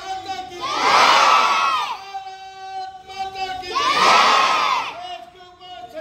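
A crowd of schoolchildren chanting in call-and-response. A single voice calls a long drawn-out line, and the children answer with a loud shout in unison. This happens twice, about three seconds apart.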